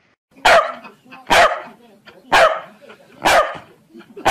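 Corgi barking: four loud, sharp barks about a second apart.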